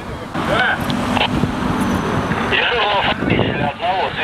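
Indistinct voices talking over street traffic noise, with a low steady hum from a passing vehicle in the middle.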